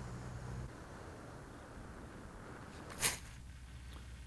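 Faint airflow noise on the onboard camera of a small RC flying wing in flight. A low hum stops within the first second, and a single short sharp knock comes about three seconds in.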